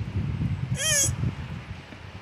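A single short, high-pitched call that rises and then falls, about a second in, over a low steady rumble.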